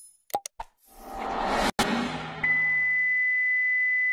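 Two short click sound effects, then a rising swell of noise that breaks off abruptly, followed a little past halfway by a steady, high-pitched test-pattern tone of the kind that goes with TV colour bars.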